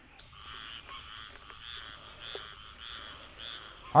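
Frogs calling in a chorus, a pulsing call repeated about every half second, over a steady thin high-pitched tone.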